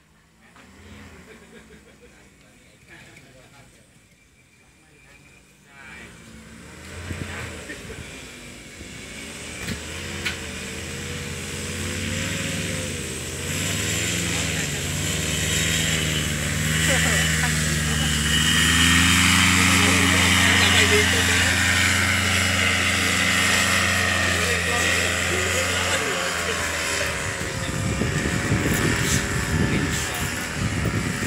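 Paramotor engine and propeller running, growing louder from faint to loud over the first half with its pitch wavering as the throttle changes. It is loudest in the middle, and the deep tone drops away about four seconds before the end.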